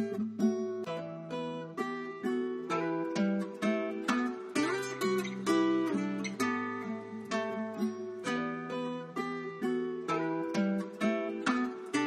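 Trap type beat's guitar melody: plucked guitar notes and chords in a steady, repeating phrase, with no drums or deep bass.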